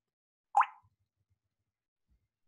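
A single short pop with a quick upward-sliding pitch about half a second in, followed by near silence.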